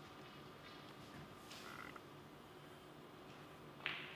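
Quiet arena room tone, then one sharp click near the end from play at the snooker table.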